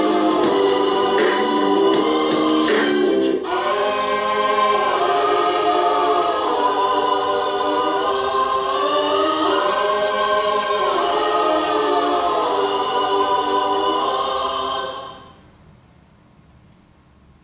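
Background choral music: a choir singing held chords, with a rhythmic beat under it for the first three seconds or so, fading out near the end.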